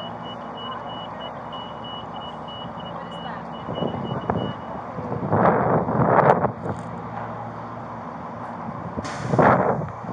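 A vehicle's electronic warning beeper sounding a steady high beep about twice a second over an idling engine, stopping about five seconds in. Then loud bursts of rustling, from around the middle and again near the end.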